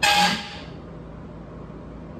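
A brief breathy rush of noise right at the start, then a steady low hum of room tone from a window air conditioner.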